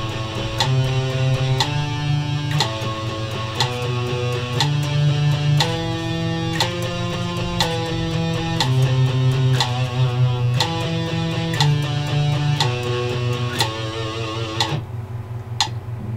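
Electric guitar playing a picking exercise at 60 beats a minute: runs of fast repeated picked notes, four to a beat, stepping between frets and changing strings, over a metronome clicking once a second.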